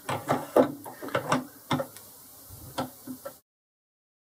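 Metal clicks and knocks as the lathe's cross slide feed screw is handled and slid back into the Boxford lathe's cross slide, a few irregular knocks in a row, cutting off suddenly near the end.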